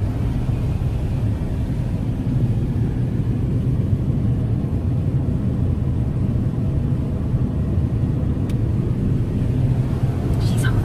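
Steady low road rumble inside a moving car's cabin, the engine and tyre noise of the car driving along.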